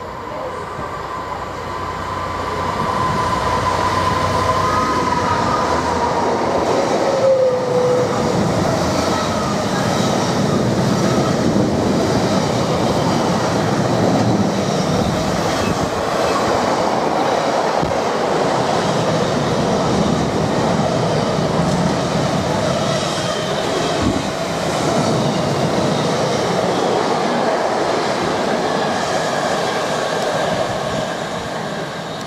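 Freightliner Class 66 diesel locomotive hauling a container freight train approaches and passes at speed, growing louder over the first few seconds. Its tone drops in pitch about seven seconds in as it goes by. Then comes the steady, loud running noise of the container wagons passing on the rails.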